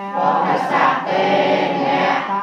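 A group of voices chanting Buddhist Pali verses in unison on a near-level pitch, swelling louder just after the start.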